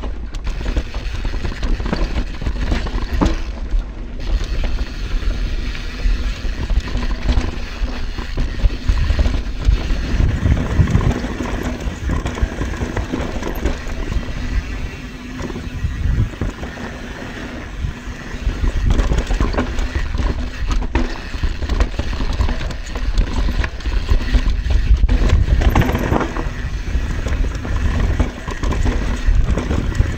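YT Tues downhill mountain bike ridden fast down a dirt trail: continuous tyre rumble over dirt and roots with frequent rattles and knocks from the bike, growing louder through a rougher stretch past the middle.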